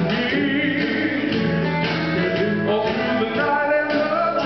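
Southern gospel male vocal group singing in harmony into handheld microphones, several voices holding notes together, one with a wavering vibrato early on.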